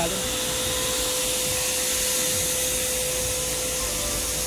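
Steady hissing, rushing noise with a steady mid-pitched hum running under it.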